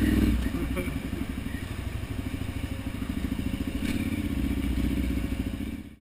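KTM 990 Adventure's V-twin engine running at low revs, easing off about half a second in and picking up again a few seconds later. A single sharp knock comes near four seconds, and the sound fades out at the end.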